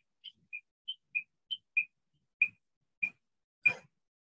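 Short, high chirps from a small bird. They come about three a second for the first two seconds and alternate between two close pitches, then slow to about one every half second.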